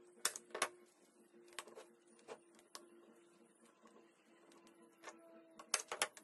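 Sharp snaps of a manual staple gun driving staples through elastic into a wooden board: two in the first second, a few lighter ones through the middle, and a quick cluster near the end.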